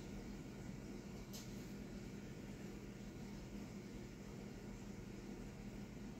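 Quiet room tone: a steady faint hiss with a low hum underneath, and one faint click about a second and a half in.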